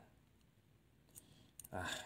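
A few faint, short clicks from a smartphone motherboard and its connectors being handled, about a second in and again just before a man's short 'ah' near the end.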